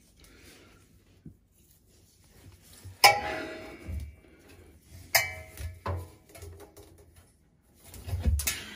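Stainless steel drum of a front-loading washing machine knocked twice while a tape measure is handled inside it, each knock ringing on briefly like a struck metal pan, with softer bumps and rustling in between.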